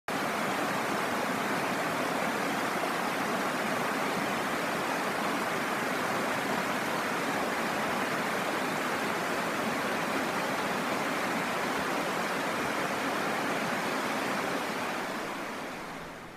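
Shallow creek water running over a rocky streambed, a steady rush that fades out near the end.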